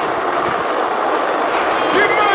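Skateboard wheels rolling fast over a concrete ramp in an underground parking garage: a steady rolling noise with no break.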